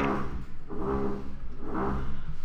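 Construction-work machinery noise: a steady low hum with a pitched mechanical drone that swells and fades twice.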